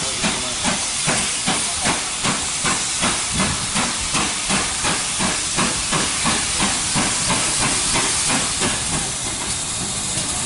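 Collett King class four-cylinder steam locomotive 6023 working towards the camera. Its exhaust beats come steadily at about three a second, over a constant hiss of steam from the open cylinder drain cocks.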